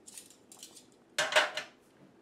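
Metal kitchen tongs clinking lightly, then set down on a metal broiler pan with one loud clank about a second in that rings briefly.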